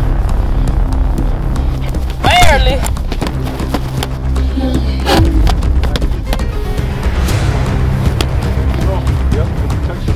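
Background music with a steady bass beat over the thuds of boxing gloves landing in a sparring bout. A brief wavering call rises over it about two seconds in.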